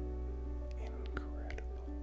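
Slow, soft background music: sustained keyboard chords holding steady low notes, with a few faint gliding high tones in the middle.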